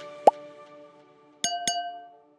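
Subscribe-button animation sound effects over a fading music chord: a short rising pop, then about a second later two quick clicks, each with a bright ringing tone.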